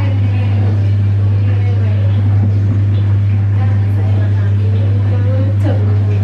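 A loud, steady low hum, with a woman singing faintly over it.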